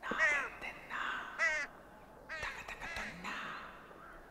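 Several short bird calls in the background, each dropping in pitch, about a second apart.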